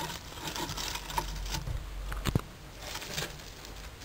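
Plant leaves rustling and light scattered clicks as a plant is handled and pushed into place among wood and moss, with one sharper click a little past halfway.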